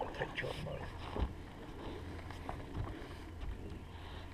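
Boat ambience on a fishing boat: a steady low hum under scattered faint clicks and rustles from anglers handling baitcasting rods and reels.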